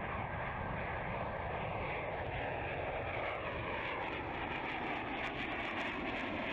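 Jet aircraft in flight: a steady rushing engine drone with a faint whine that slowly falls in pitch.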